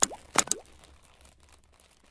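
Synthetic logo-animation sound effect: two quick pops with a short rising blip, about half a second apart, then a faint tail that fades out.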